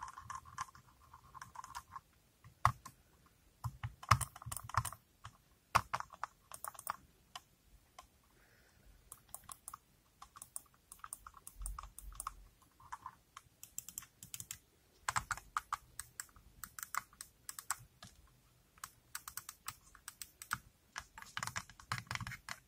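Fingernails tapping on the plastic shell of a computer mouse in quick, irregular runs of sharp clicks.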